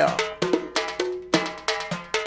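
UK funky house track playing: a busy percussion pattern of short, sharp knocking hits, several a second, over held synth notes.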